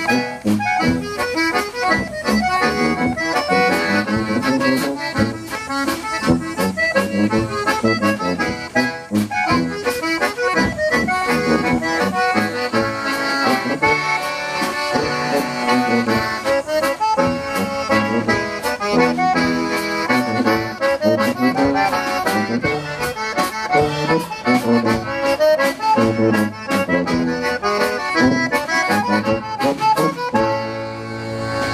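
Live polka trio: a concertina plays the melody and chords over tuba bass and a drum kit keeping a steady beat.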